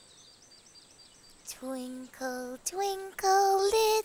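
A high, childlike voice singing a short wordless tune in held notes that step upward and grow louder, after a faint run of high chirps.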